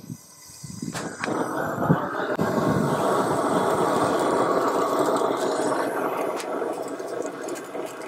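A propane grill-gun torch lighting lump charcoal. After a click or two about a second in, it runs with a steady rushing blast of flame that builds up, holds, and eases off near the end.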